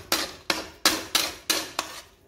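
A metal spatula striking and scraping against a metal kadhai as thick semolina halwa is stirred briskly, about six sharp clanks at roughly three a second.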